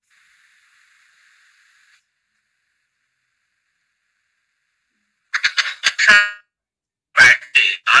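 Video-call audio: a faint hiss, then about three seconds of dead silence, then choppy, clipped fragments of a voice from about five seconds in.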